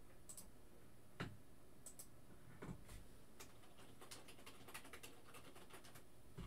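Faint, scattered clicks and taps of a computer keyboard and mouse in use, coming a little more often in the second half.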